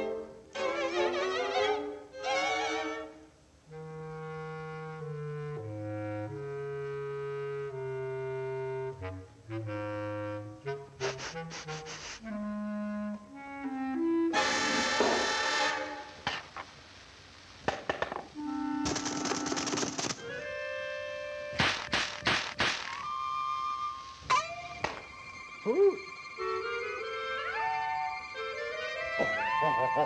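Orchestral cartoon score with clarinet and brass playing short, shifting phrases, broken midway by a couple of brief hissing bursts and a run of quick struck hits.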